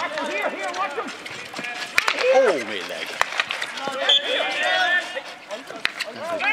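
Men's voices calling out and talking over one another, with a few sharp knocks about two, three and six seconds in.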